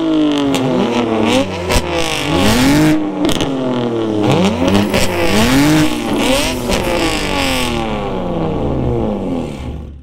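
BMW G80 M3's twin-turbo S58 inline-six, fitted with a Valvetronic Designs equal-length exhaust and free-flow downpipes with the valves open, free-revved to redline while stationary again and again. Each rev rises sharply and falls away, with a few sharp cracks in between, and the sound fades out near the end.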